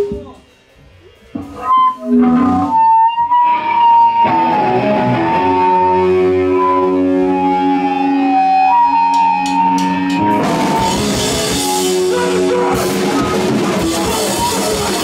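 Hardcore punk band starting a song live. After a brief hush and a few scattered notes, distorted guitar and bass chords ring out in long held notes. A few sharp clicks come just before ten seconds in, and then the full band with drums and cymbals comes in.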